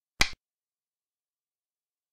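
A single short, sharp click of a xiangqi piece being set down: the move sound of an animated game replay, marking a move on the board.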